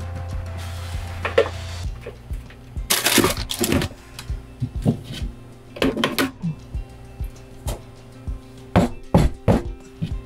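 Kitchen utensils clattering: a mixing bowl and spatula taken off a glass-top stove and a metal tube cake pan handled, giving several sharp knocks and clinks in clusters, over background music.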